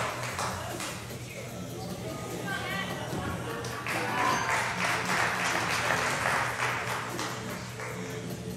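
Background music with the voices of an onlooking crowd; the crowd noise swells into louder shouting and cheering about halfway through.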